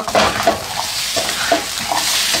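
Vegetables, rice and beans sizzling in a hot non-stick frying pan, with several short scraping strokes as a spatula stirs the food.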